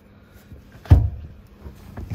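A single sharp thump about a second in, with a short low, dull tail.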